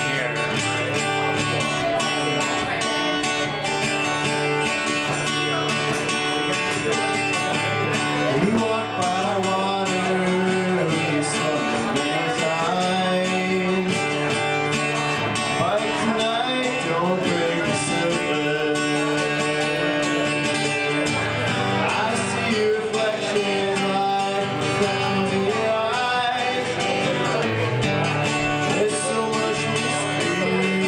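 Acoustic guitar strummed and picked steadily through a song, with a man singing along at times.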